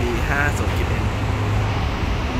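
Steady low rumble of vehicle and traffic noise under a man's brief speech.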